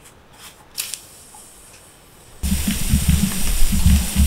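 Red-hot annealed copper bonsai wire coil set down on wet concrete, the water flashing to steam: a loud sizzling hiss that starts suddenly about two and a half seconds in and keeps going.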